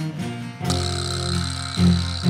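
Instrumental break in an acoustic song: a cello holds low sustained notes. Under a second in, a small metal hand percussion instrument is struck once with a beater and rings on at a high pitch.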